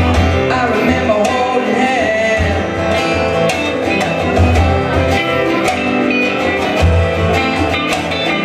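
Live band music: electric guitar and strummed acoustic guitar over a steady drum beat, with a man singing.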